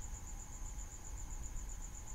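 A faint, steady, high-pitched trill pulsing at an even rate, over a low background hum.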